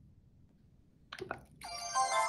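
A couple of short clicks, then about a second and a half in the BrailleSense Polaris braille notetaker plays its electronic wake-up chime from its speaker, a sustained multi-note tone: the device coming out of sleep.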